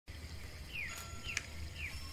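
Faint bird chirps: three short, quick downward chirps about half a second apart, over a low steady hum.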